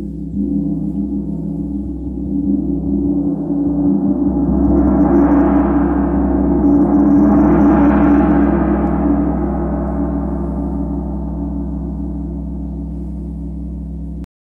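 Large chau gong played with a soft felt mallet: its deep sustained hum swells into a loud shimmering wash, brightest around the middle, then slowly dies away.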